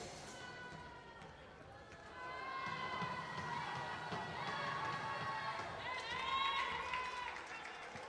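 Faint arena crowd during a free throw: a murmur of spectators with drawn-out voices calling out, getting louder from about two seconds in.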